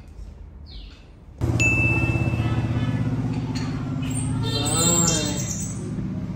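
A car engine idling with a steady low pulsing hum, coming in suddenly about one and a half seconds in. A brief high beep sounds just after it starts, and a wavering high-pitched call comes near the end. Before the engine there is only faint room sound with a short chirp.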